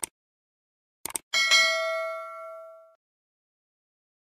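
Subscribe-button sound effect: a click, then a quick double click about a second in, followed by a notification-bell ding. The ding rings out with several pitches and fades over about a second and a half.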